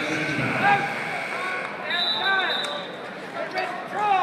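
Indistinct crowd chatter from many voices in a gym, with a short, high, steady tone about two seconds in.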